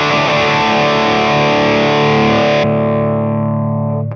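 Distorted electric guitar through an Orange Rockerverb 50 MkIII's dirty channel, boosted by a Suhr Shiba Drive Reloaded with a TC Electronic Flashback delay in the effects loop, recorded direct through a Two Notes Torpedo Live. Riffing gives way about two-thirds of the way through to a held chord that rings on, its treble fading.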